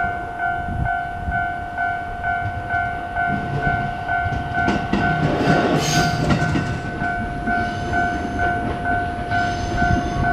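Japanese level-crossing electronic warning bell ringing a two-tone ding in a rapid, even beat. A train passes from about three seconds in, its rumble and rail noise loudest around the middle.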